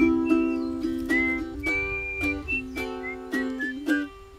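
Ukulele strummed in a steady rhythm of chords while a man whistles a melody over it, the whistled notes sliding slightly between pitches. The strumming stops right at the end.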